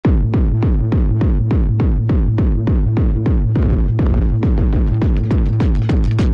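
Hardcore electronic music opening on a fast, steady kick drum alone, about three and a half beats a second, each beat dropping in pitch.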